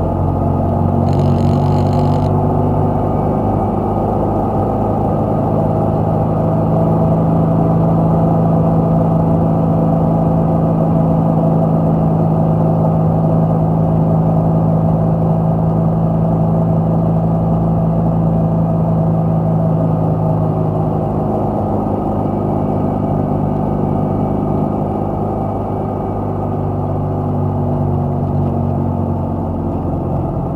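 Car engine running steadily under way, heard from inside the cabin with road noise, its pitch shifting a little in the last third as the speed changes. A brief high-pitched tone sounds about a second in.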